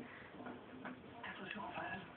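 Faint handling noise: scattered light clicks and ticks as the compound bow and camera are moved about close together.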